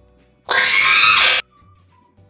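A scream-like sound effect, just under a second long, that cuts in and out abruptly about half a second in.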